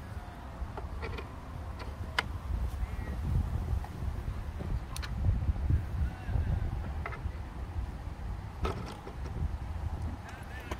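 A few sharp clicks and knocks from the V-max unit's metal push handles being pulled out and handled, over a steady low rumble that swells in the middle.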